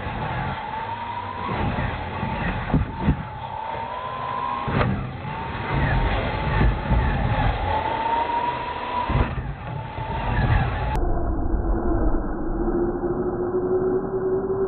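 Electric drive whine of radio-controlled Clod Buster-style monster trucks racing, rising and falling in pitch as they throttle, with several sharp thumps as the trucks hit ramps and land. From about eleven seconds in the sound turns duller, with one lower whine rising slowly.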